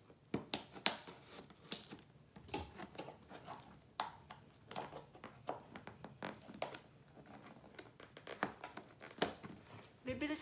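Scissors cutting open the packing tape on a cardboard box, with irregular snips, crackles and tearing of tape and cardboard as the box is handled and opened.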